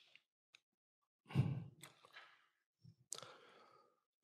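A man sighs or breathes out audibly into a close handheld microphone, about a second in. A short click follows near the end.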